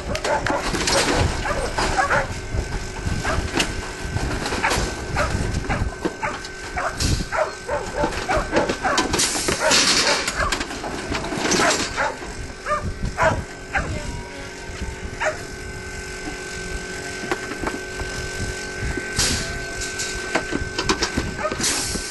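Sheep passing through an aluminium sheep weighing and drafting crate: many irregular knocks and clatters of hooves on its floor and of its metal gates and doors, busiest about ten seconds in, over a faint steady tone.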